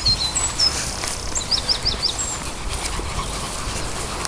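Small songbirds chirping and singing, with a quick run of four short notes about one and a half seconds in, over a steady low rumble.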